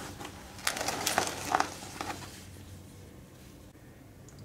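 A few light clicks and taps of handling, bunched in the first half, as sticky Tanglefoot is brushed onto a tape band on a potted tree's trunk.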